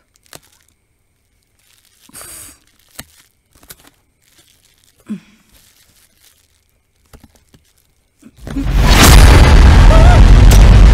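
A cardboard box being opened by hand: faint scattered tearing of packing tape and crinkling of cardboard. About eight and a half seconds in, a sudden loud boom-like film sound effect crashes in and holds.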